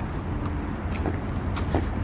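Outdoor road-traffic rumble, steady and low, with a few faint taps.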